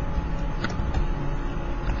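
Steady low background rumble and hiss, with a few faint clicks.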